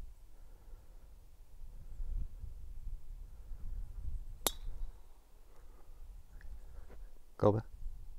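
Golf club striking a ball off the tee: a single sharp, ringing click about halfway through, followed near the end by a brief exclamation from a person.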